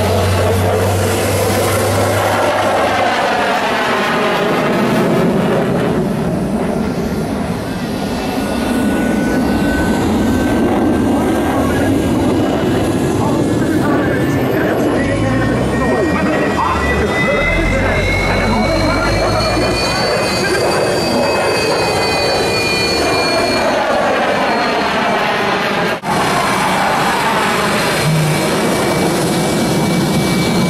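Su-30MKM's twin AL-31FP turbofan engines running on the ground, a steady jet noise with a turbine whine that climbs slowly in pitch partway through and then holds.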